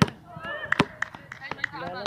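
Basketball bouncing on an outdoor hard court: a handful of sharp, irregular bounces, the loudest right at the start and another just under a second in, with faint distant voices of players between them.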